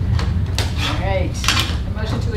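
A few short clinks and clatters of hard objects being handled on a table, loudest about a second and a half in, over a steady low hum.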